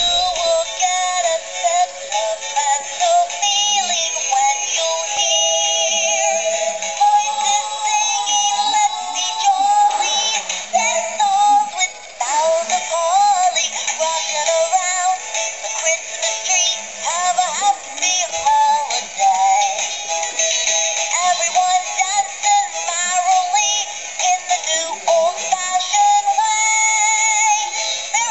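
Animated singing Christmas bauble ornament singing a Christmas song in a synthetic electronic voice through its small built-in speaker, thin and tinny with almost no bass.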